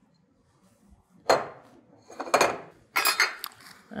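A spatula knocking and scraping against a mixing bowl as thick chocolate batter is scraped into a metal cake pan, three clinks about a second apart, then the bowl set down on the stone counter.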